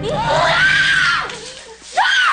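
A woman belting a loud, high wailing note into a karaoke microphone; her pitch climbs, holds and falls away, and a second loud note starts near the end. A karaoke backing track fades out beneath her.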